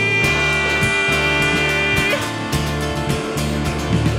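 Rock band playing live without vocals: drums, bass and electric guitars. A long high held note sounds over the band and stops about two seconds in.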